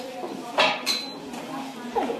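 Sharp clinks of small hard objects: two about half a second in, the second with a brief high ring, and another knock near the end, over low voices.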